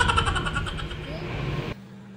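A motor vehicle running close by on the street, a pitched engine sound over a low rumble that fades over a second and a half. It cuts off suddenly near the end to the faint steady hum of a quiet room.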